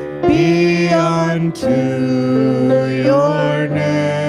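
Worship song: voices singing long held notes over a sustained accompaniment, with a short break about a second and a half in.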